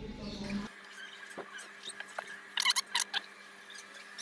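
Soldering iron melting solder and flux on the pins of a USB port to desolder it from a power bank module: faint scattered clicks, then a short burst of high, squeaky sizzling about two and a half seconds in.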